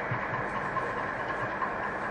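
Steady room hum and hiss through the microphone in a pause between spoken sentences.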